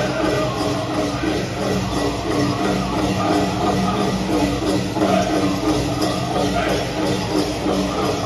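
A powwow drum group singing a grand entry song in chorus over a steady beat on the big drum.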